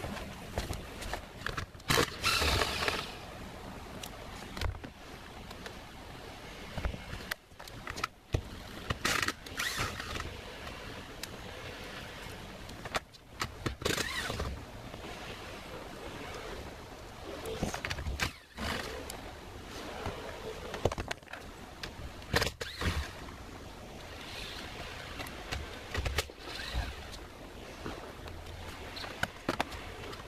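Wind buffeting the microphone in irregular gusts, with several louder surges and brief dropouts.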